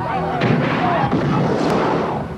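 Battle sounds from a film soundtrack: a dense burst of gunfire with men shouting, starting about half a second in.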